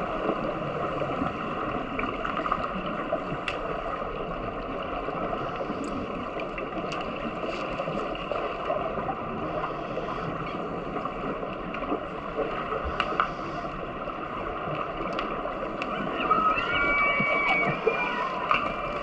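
Steady rushing water noise picked up underwater in the pool during an underwater rugby match, with scattered faint clicks and knocks. Near the end a brief high tone sounds over it.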